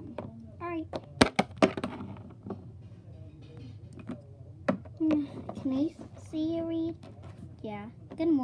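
A child's voice making short wordless vocal sounds. A cluster of sharp clicks about a second in is the loudest part, with one more click near five seconds.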